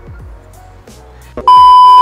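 Background music with a steady beat. About one and a half seconds in, a loud, steady, high beep tone cuts in and lasts half a second.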